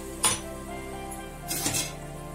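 Background music, with two brief clinks of cookware on an aluminium pan: a sharp one just after the start and a slightly longer one near the end, as a wooden spatula works in the curry masala thinned with water.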